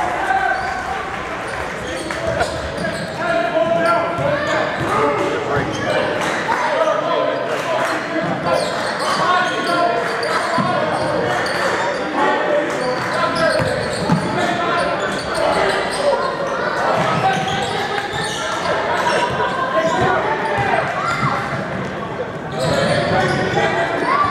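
A basketball bouncing on a hardwood gym floor during play, with a steady hubbub of spectators' and players' voices echoing in the large gym.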